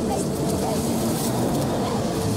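Film soundtrack from a chaotic action scene: a dense, steady wash of noise with a short shouted exclamation from a character.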